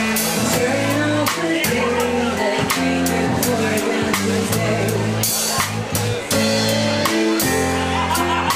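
A live band playing a song: a drum kit keeping a steady beat with cymbal hits, under sustained bass notes and guitar.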